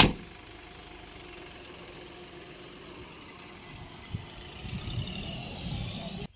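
A car door slams shut, then a Mahindra Bolero SUV's engine runs steadily at idle before the vehicle pulls away, its engine noise growing louder over the last two seconds.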